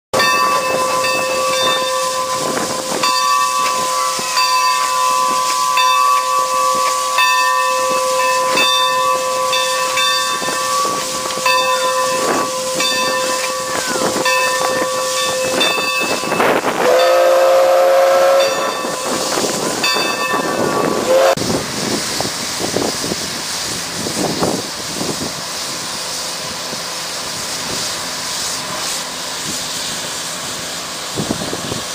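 California Western steam locomotive No. 45 hissing steam as it moves, with a steady ringing tone that pulses about once a second. About 17 seconds in comes a two-second steam whistle blast, the loudest sound, then a short toot; after that the steam and running noise go on more softly.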